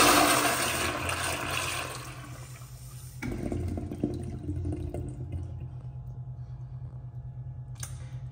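Toilet flushing: a loud rush of water that fades over about three seconds. About three seconds in, a quieter flush with a low hum cuts in, and a fresh loud rush starts right at the end.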